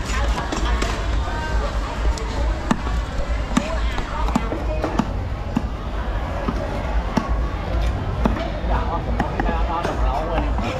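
Cleaver chopping through fish on a round wooden chopping block: dull knocks at an uneven pace, roughly one a second, over market voices.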